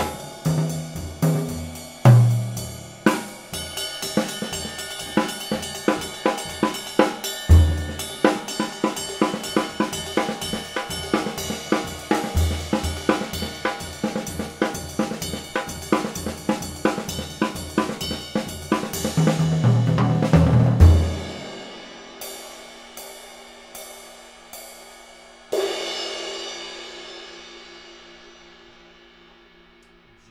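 Drum-kit groove of bass drum and snare under a steady ride pattern on a 20-inch Zildjian A ride cymbal of medium weight (2292 g). About two-thirds of the way through, the groove stops. A few single strokes on the ride follow, then one louder crash on it that rings out and slowly fades.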